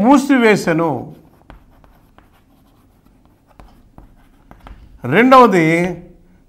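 Chalk writing on a blackboard: a string of faint, light taps and short scratches as the chalk strokes form letters, in the pause between a man's speech in the first second and near the end.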